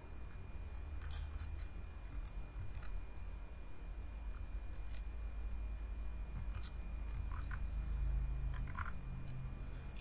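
Scattered sharp clicks from a computer mouse and keyboard, irregular and a dozen or so in all, over a low steady hum.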